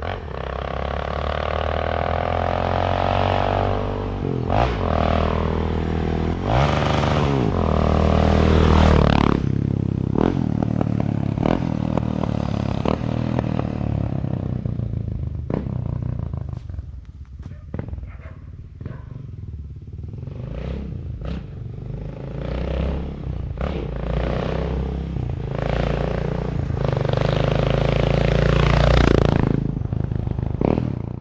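Motorcycle with a current-model Dore aftermarket exhaust accelerating through the gears, its pitch climbing and dropping back at each shift. Around the middle it eases off and runs quieter with sharp crackles, the crackly character of this exhaust, then it builds up again near the end.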